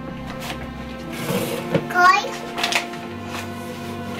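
Packaging being handled at a table: a packet and a paper flour bag rustling, with a few light knocks as they are put down. A short child's voice comes about halfway through.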